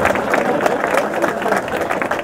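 Applause from a small crowd: many hands clapping quickly and densely, with voices mixed in.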